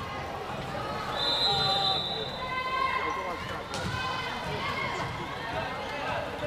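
Many girls' voices calling and chattering in a sports hall during a volleyball match, with a steady high note held for about a second near the start and a couple of sharp knocks later on.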